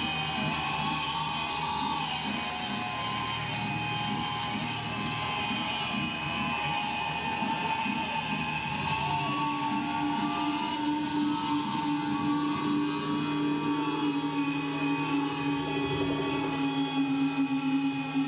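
A droning wash of sustained, slowly wavering tones with no beat or drums; a steady low hum comes in about halfway through and holds.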